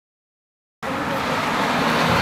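Silence, then a little under a second in a sudden cut to steady outdoor traffic noise: a continuous road roar with low rumble, fairly loud.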